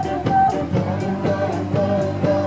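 Live rock band playing amplified music: a drum kit keeps a steady beat under guitar and sustained melody notes.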